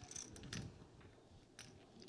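Near silence broken by a few faint, light clicks.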